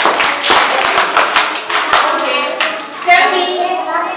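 A group of people clapping their hands, uneven claps several times a second, dying down after about two seconds as voices take over.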